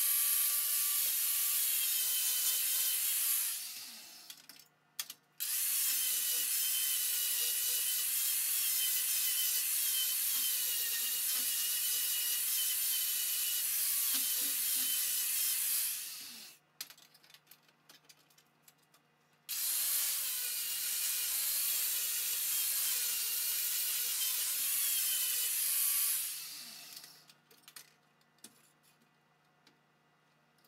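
Angle grinder grinding a steel blade. It runs in three long passes, its pitch wavering with the load, and each pass ends with the motor winding down. In the gaps, light clicks and knocks come from the clamps holding the blade being shifted.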